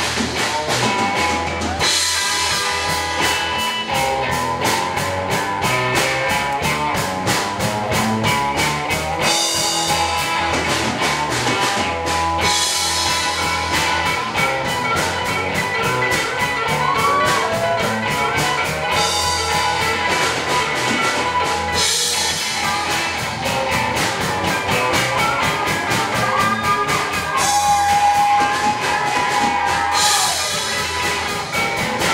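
Live rock band playing an instrumental passage with no singing: electric guitars over drums, with cymbal crashes every few seconds and a guitar line that bends in pitch a couple of times in the second half.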